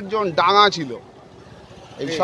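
A man speaking, his phrase ending about a second in, followed by a pause filled only with faint steady background noise.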